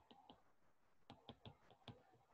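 Faint, irregular clicks and taps of a stylus on a tablet screen during handwriting, several in quick succession near the start and again through the second half.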